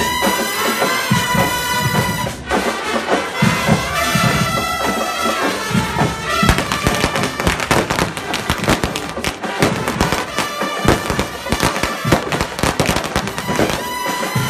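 A marching band plays brass music. From about halfway through, a rapid, irregular string of firecracker bangs crackles over it for several seconds.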